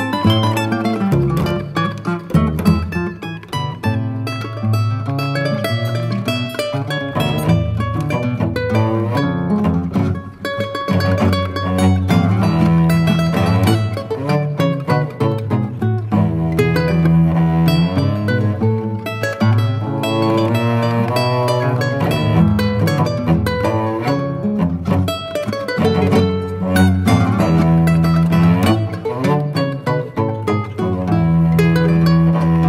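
Instrumental music led by a plucked acoustic guitar, with a dense run of picked notes over held low notes.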